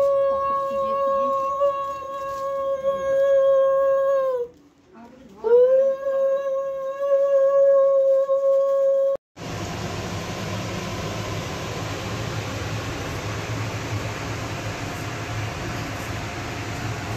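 A conch shell (shankha) blown in two long, steady blasts. Each swells up to pitch at the start and drops off at the end; the first lasts about five seconds and the second about four. About nine seconds in, the sound cuts off abruptly to a steady hiss.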